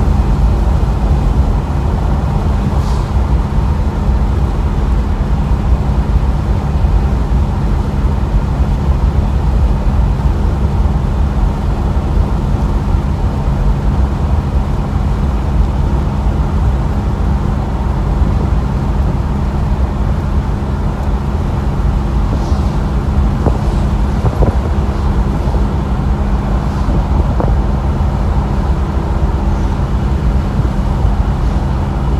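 Steady road and wind noise inside a moving car with the windows open: a loud, even low rumble of wind buffeting and tyres, with a faint steady hum running through it.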